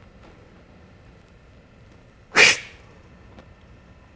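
A single short, sharp puff of breath, like a forceful exhale or a sneeze, about two and a half seconds in, over quiet room noise.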